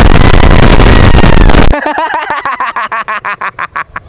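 Edited-in 'triggered' meme sound effect: an extremely loud, distorted blast of noise for about two seconds, cutting off suddenly into a rapid stuttering, chopped-up sound whose pulses come faster toward the end.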